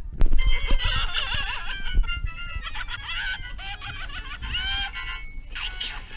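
Face Ripper Clown Halloween animatronic playing its sound track: high, warbling music-like squeals with sliding pitch. There is a sharp knock just after it starts and a few low thuds.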